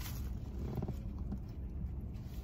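Steady low rumble in a car cabin, with a faint brief murmur from a person about a second in.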